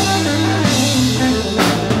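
Live electric blues trio playing: electric guitar and electric bass over a drum kit, with cymbal hits about halfway through and near the end.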